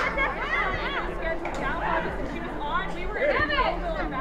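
Several voices calling out and talking over one another during a soccer match, with a sharp knock right at the start.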